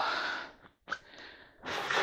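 A man's breath: a breathy exhale trailing off after a word and fading within half a second, a short click near the middle, then a breath drawn in just before he speaks again.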